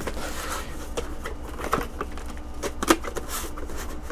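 A cardboard CPU retail box being handled and its lid closed: light scraping and rustling with small clicks, and one sharper click about three seconds in.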